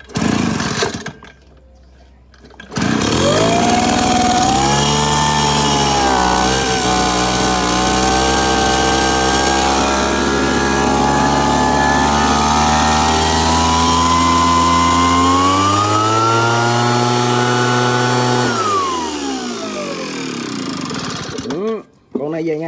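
Small two-stroke engine of a backpack blower-spreader being pull-started. A brief burst at the start, then it catches about three seconds in and runs steadily. Its revs rise about fifteen seconds in, then it winds down in a long falling pitch and stops near the end.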